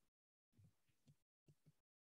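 Near silence, with the audio dropping to dead silence in places.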